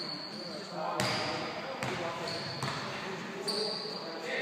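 Basketball bouncing on a wooden sports-hall floor, three sharp bounces a little under a second apart.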